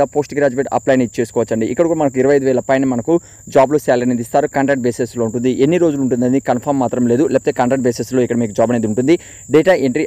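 A man talking continuously in Telugu, with a thin, steady high-pitched whine running faintly underneath.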